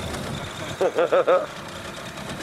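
Small outboard motor idling low and steady. About a second in, a voice makes four quick, pitched rise-and-fall sounds over it.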